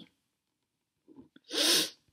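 A person sneezing once near the end, a short loud burst after a faint breath in.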